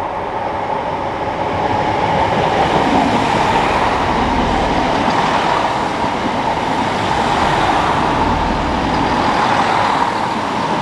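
Chiltern Railways Class 165 diesel multiple unit running past close by: a loud, steady rumble of diesel engines and wheels on the rails. It grows louder over the first couple of seconds.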